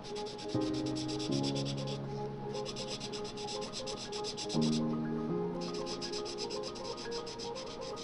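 Felt-tip marker rubbing back and forth on paper in fast, even strokes. The strokes come in runs of a couple of seconds, pausing briefly twice. Soft background music with held notes plays underneath.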